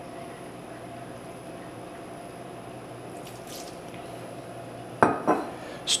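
Cognac poured from a small glass into a stainless pan of apples simmering in butter and brown sugar, a faint steady trickle and sizzle. About five seconds in there is a sharp clatter against the pan, and a second just before the end.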